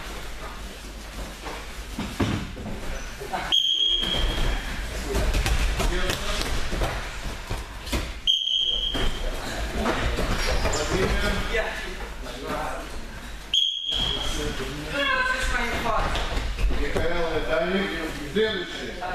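Three short high signal tones, about five seconds apart, each just after a brief moment of silence. Around them are the thuds of people running and jumping barefoot on gym mats and voices in a large hall.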